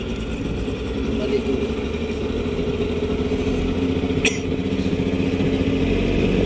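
A small boat's motor running steadily under way, growing gradually louder.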